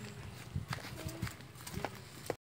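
Footsteps on a dirt path scattered with gravel: several irregular steps.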